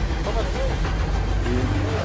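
Steady low rumble of a sportfishing boat's engine, with wind and sea noise on the microphone.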